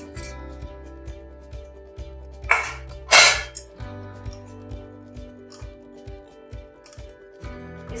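Hot oil with cumin seeds (a tadka) sizzling sharply as the ladle is plunged into buttermilk raita, in two short, loud bursts about two and a half and three seconds in, over steady background music.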